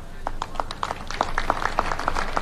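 Scattered applause from an audience: many separate, uneven claps rather than a dense roar.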